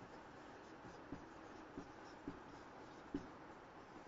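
Marker pen writing on a whiteboard: faint strokes with four short taps, spaced unevenly about a second apart, over a low steady hiss.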